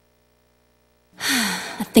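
About a second of silence between songs, then a loud, breathy sigh falling in pitch that opens a country song; the singing begins right at the end.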